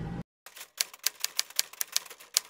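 Typewriter keystrokes, a typing sound effect spelling out title text: quick, slightly uneven clacks, about seven a second, starting about half a second in.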